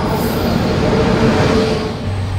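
An Indian Railways WAP-7 electric locomotive drawing into the platform and passing close by, loud rumbling rail noise with a steady high note running through it.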